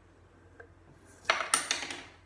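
Wooden pencils clattering against a wooden tabletop as they are set down or picked up: one faint click, then a quick rattle of sharp knocks lasting under a second near the end.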